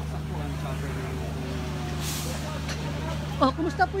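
A vehicle engine drones steadily with faint voices behind it and a short hiss about halfway through; a man starts talking close by near the end.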